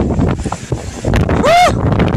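Strong gusty wind buffeting the phone's microphone in a dense low rumble. About one and a half seconds in, a short wordless cry rises and falls in pitch over the wind.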